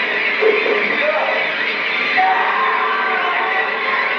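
Horror film trailer soundtrack: music mixed with indistinct voices, dense and steady throughout, with the top end dulled as on a VHS tape.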